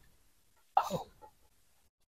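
A woman's short excited exclamation, a single vocal 'oh' that falls in pitch, about a second in.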